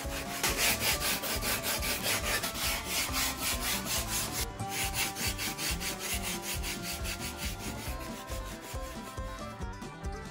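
A 150-grit sanding sponge rubbed over polystyrene insulation foam in quick back-and-forth strokes, a steady scratching of several strokes a second with a brief break about four and a half seconds in. The sanding smooths off the fuzzy surface left after rough shaping.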